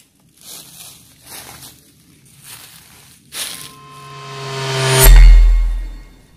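A few short rustling crunches, then a rising riser sound effect that swells into a deep bass boom, a film-style dramatic sting.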